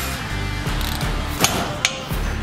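Background music, with two sharp metallic clicks near the end from a click-type torque wrench on a brake caliper carrier bolt: the sign that the set torque of 190 Nm has been reached.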